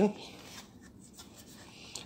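Faint scratchy rubbing as a hand handles a diecast model tank and its plastic display base.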